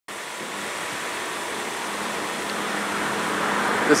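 Outdoor background noise on a car lot: a steady rushing hiss with a faint low hum, growing slowly louder, like traffic or a nearby machine.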